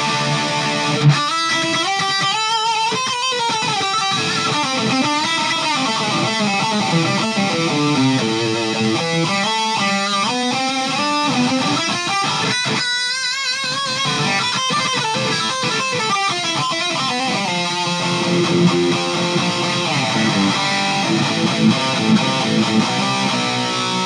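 Electric guitar played through a Boss ME-50 multi-effects unit on its Metal distortion setting with the variation engaged, at over-the-top gain. Heavily distorted riffs and sustained lead notes, some wavering with vibrato, cut off abruptly at the end.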